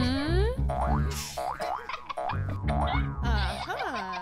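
Upbeat background music with a steady beat, overlaid with cartoon-style sliding 'boing' sound effects: a rising one at the start and another, rising and falling, near the end.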